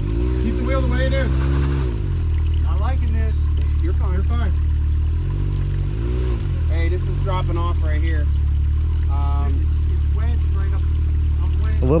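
Can-Am side-by-side UTV engine running while the machine is stuck among creek-bed rocks. It is revved up for about two seconds at the start and again briefly about halfway, then drops back to a steady run. Voices call out over it at a distance.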